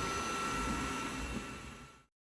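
Dreame Bot L10 robot vacuum running, a steady whir with a faint thin whine, fading out toward the end.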